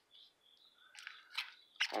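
Quiet handling of Magic: The Gathering cards and a foil booster pack: a couple of light clicks and a rustle from about a second in, with a faint high chirp early on. A man's voice starts just before the end.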